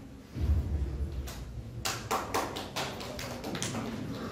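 A low thud, then a quick, irregular run of sharp taps from about a second in until near the end.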